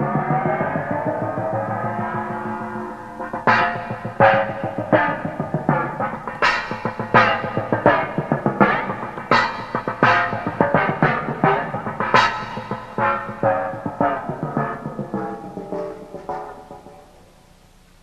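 Small hand-held gong struck with a soft mallet while being dipped in and out of a bucket of water, so its ringing slides in pitch. It first rings with a rising glide, then is struck about twenty times in a loose rhythm, each stroke ringing and bending, before fading out near the end.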